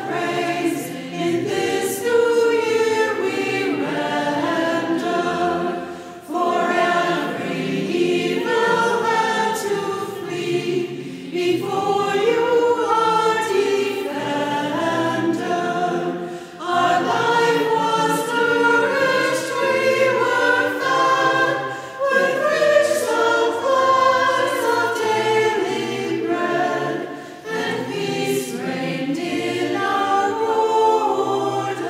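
Church choir singing a hymn, in phrases of about five seconds with short breaks for breath between them.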